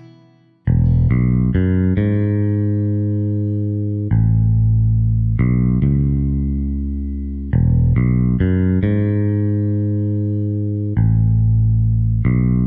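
Instrumental song intro with bass and guitar. A soft chord gives way, under a second in, to loud held chords with a heavy bass, changing every one to two seconds.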